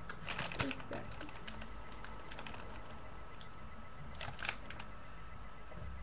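Light clicking and crackling from handling a double cheese grater in its plastic packaging. The clicks come in two short clusters: one starting about half a second in and lasting about a second, another about four seconds in.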